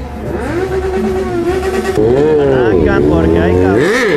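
Motorcycle engine revving in a parade, the revs rising and falling, dipping about three seconds in and then climbing steeply near the end.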